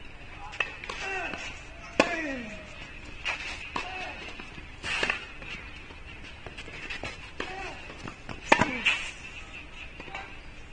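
Tennis rally: sharp pops of the racket strings hitting the ball and the ball bouncing, roughly one every second or so, the loudest about two seconds in and near the end. A player's short grunt, falling in pitch, follows several of the hits.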